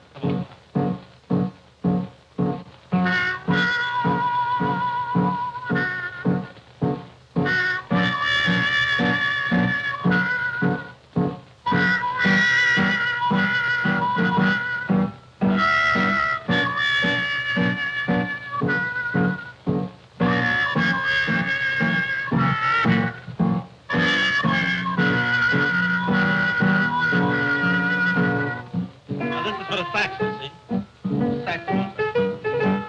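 Trumpet playing a slow, bluesy melody with vibrato over steady chords on an upright piano; the piano plays alone for about the first three seconds before the horn comes in. The sound is that of an early sound-film recording.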